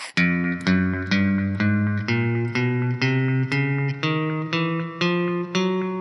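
Fender Stratocaster electric guitar with Fishman Fluence single-width pickups playing the 'spider' finger warm-up: single notes picked one after another, about two a second, each at a new pitch, the last one left ringing.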